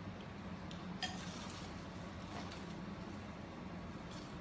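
Quiet kitchen room tone with a steady low hum and a few soft clicks and taps from pretzels and utensils being handled on the counter, the clearest about a second in.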